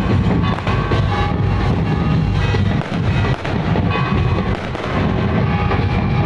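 Firecrackers going off in a rapid, continuous string of bangs over music.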